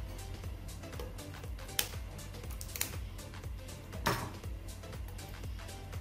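Small clicks and taps of pliers and wire handling on a stand fan's motor as a cable is worked free, with sharper clicks about two, three and four seconds in, over quiet background music.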